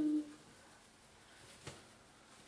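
Near quiet room tone after a spoken word ends at the very start, with one small click about three-quarters of the way through.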